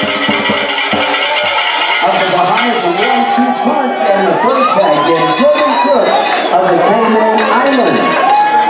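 Crowd of spectators shouting and cheering at the finish of a swimming race, many voices overlapping without a break.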